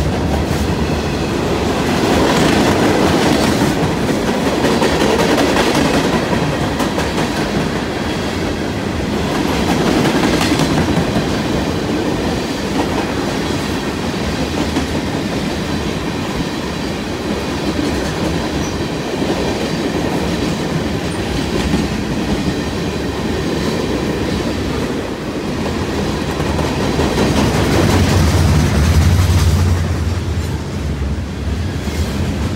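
A CN freight train's cars rolling past close by: a continuous rumble of steel wheels on the rails with clacking as the trucks go by. It swells and eases as cars pass, getting louder with a deeper rumble near the end.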